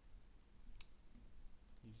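Faint computer mouse clicks: one sharp click a little under a second in, then a few quick clicks near the end as a folder is opened in a file dialog.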